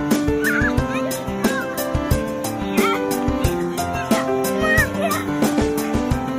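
Background music with a steady beat and held notes. Several short squeaky calls that bend up and down in pitch sound over it.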